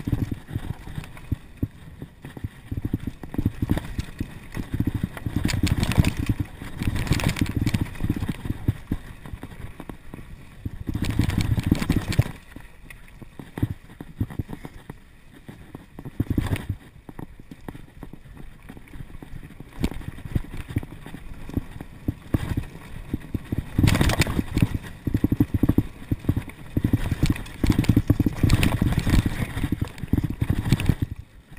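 Mountain bike ridden fast down a dirt singletrack: the bike rattling and clattering over bumps, with tyre noise and a low wind rumble on the microphone that swell in louder stretches.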